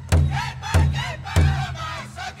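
Powwow drum song: a big drum struck in a steady beat, about one and a half strokes a second, under high, wavering group singing.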